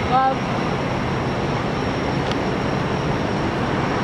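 Steady outdoor city background noise, an even wash of sound with no distinct events, with a short voice sound at the very start.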